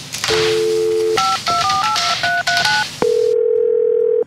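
Telephone line tones from a corded push-button phone: a dial tone, then about seven quick touch-tone key beeps as a number is dialled. After a click, a single steady tone plays on the line.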